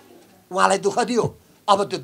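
A man speaking. After a brief pause there is a short phrase about half a second in, and another begins near the end.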